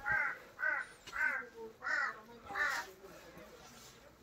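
A crow cawing five times in a steady series, about two-thirds of a second apart, falling silent about three seconds in.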